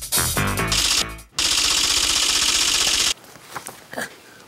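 A short musical sting, then a loud rapid rattling burst of under two seconds that cuts off abruptly: a TV transition sound effect.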